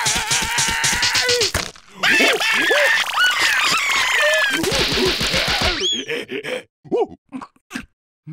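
Cartoon larvae yelling and squealing in wordless gibberish voices over a rapid string of short hits, with a brief break about two seconds in. Near the end it thins to a few short, separate sounds.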